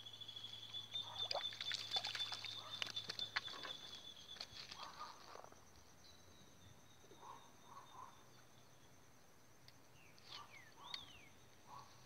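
Faint sounds of a fish being landed on a hand line: scattered light clicks and rustles, mostly in the first four seconds. Under them, a steady high-pitched insect buzz in the first few seconds, and a short falling bird chirp near the end.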